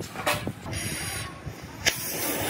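Rusty steel parts of an old walk-behind tiller knocking and scraping as the handle frame is worked loose and pulled off, with a brief hiss in the middle and one sharp click near the end.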